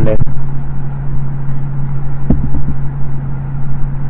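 Steady low hum with a dull rumble underneath, and a few short computer keyboard key clicks a little past halfway.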